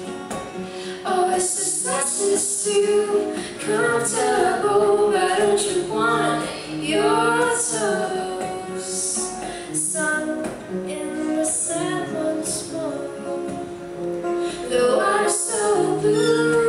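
Live acoustic music: a woman singing over strummed steel-string acoustic guitars.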